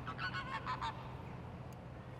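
Geese honking faintly: a quick run of short calls that stops about a second in.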